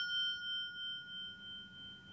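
A bell-like ding, struck just before, ringing on as a clear tone that fades away with a slow waver.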